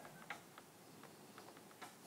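Near silence: room tone with two faint short ticks, one early and one near the end.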